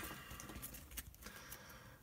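Faint handling of a small stack of trading cards as they are slid out of the torn foil pack and squared between the fingers, with light rustles and a soft tap about a second in.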